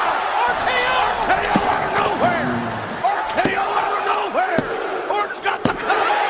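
Several young men yelling and whooping in excitement, in repeated short rising-and-falling shouts, with a few sharp knocks near the end.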